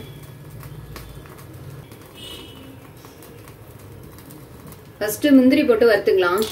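A quiet stretch with a faint low hum and a brief faint high chirp about two seconds in, then a person's voice speaking near the end.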